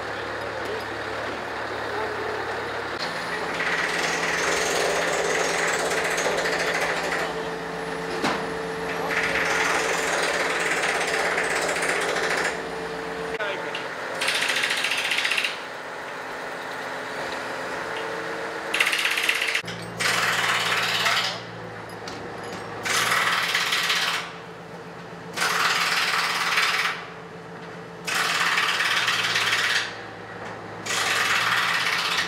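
Truck-mounted crane's diesel engine running steadily while lifting, its pitch stepping up a few seconds in. From the middle on, it is broken by loud rattling bursts, each about a second and a half long with short pauses between.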